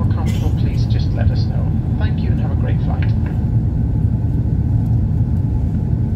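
Steady low rumble of an airliner cabin in flight, the engines and airflow heard from inside the passenger cabin. A crew member's PA announcement over the cabin speakers runs through the first three seconds or so.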